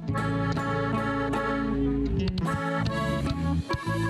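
Norteño band playing an instrumental passage, a button accordion carrying the melody over electric bass, with a short break near the end.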